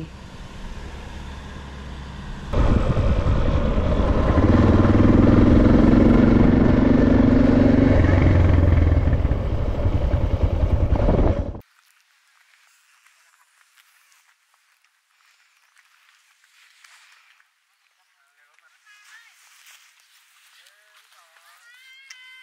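Suzuki DR650 single-cylinder motorcycle on the move, engine running under heavy wind rush. It comes in loudly a couple of seconds in and cuts off suddenly after about nine seconds.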